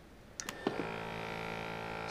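A couple of sharp switch clicks on an M4 battery-powered backpack sprayer, followed by a steady, even-pitched hum.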